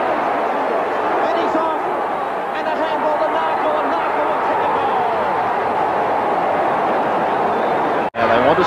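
Large football stadium crowd cheering a goal, a steady dense din of many voices with no single voice standing out, heard through old television broadcast audio.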